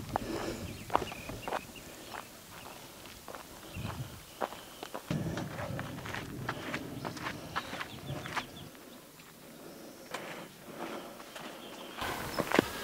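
Footsteps on a dirt hiking trail, an irregular run of soft scuffs and steps.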